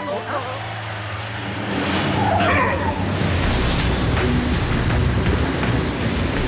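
Cartoon sound effect of a vehicle speeding in: a rushing noise builds, then a heavy low engine rumble grows from about halfway through.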